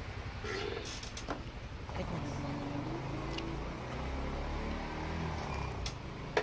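A motor vehicle's engine running with a steady low drone, with a few light clicks from cardboard packaging being handled.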